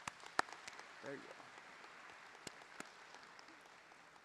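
Audience applause, a steady patter of many hands that fades near the end. Sharper single claps from one person clapping close to the podium microphone stand out above it.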